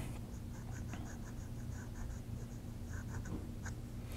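Soft extra-fine nib of a Pilot Metal Falcon fountain pen scratching faintly across Rhodia paper as a word is written in cursive, in a quick run of short strokes.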